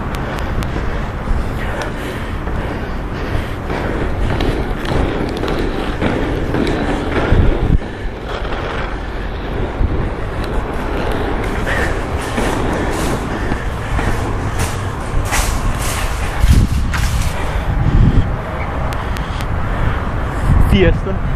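Freestyle inline skate wheels rolling on rough asphalt: a steady gritty rumble with scattered sharp clicks, more of them in the second half.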